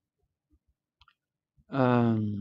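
Near silence broken by two faint clicks, then, near the end, a man's voice starts a long, steady held vowel like a hesitation sound.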